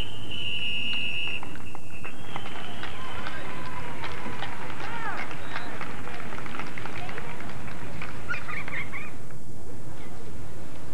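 A referee's whistle blown in one long steady blast for about the first two seconds, then scattered shouting voices from players and onlookers, over a constant videotape hiss.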